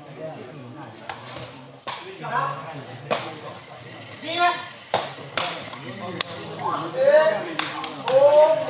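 A sepak takraw ball being kicked back and forth in a rally: about seven sharp cracks spread unevenly through the time, with people's voices calling out between them.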